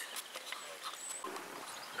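Quiet outdoor background: a faint steady hiss with a few weak, indistinct sounds and a brief thin high whistle near the middle.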